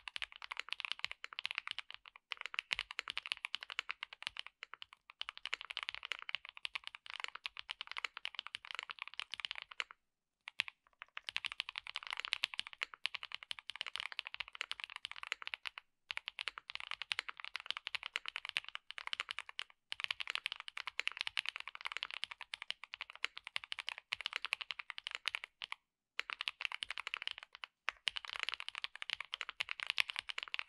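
Typing on a Mr.Suit 80 mechanical keyboard fitted with lubed and filmed Franken switches (NovelKeys New Cream stems in Cherry housings) on a PC plate with full foam and GMK keycaps. Fast runs of keystrokes broken by brief pauses, the longest about ten seconds in.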